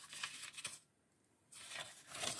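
Paper rustling as the pages of a thin paperback magazine are handled and turned: two short bouts of rustle with a silent gap between them.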